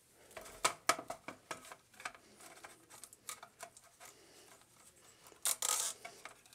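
Small plastic clicks and taps as hands handle and pose an action figure mounted on a clear plastic display stand, with a short rustle near the end.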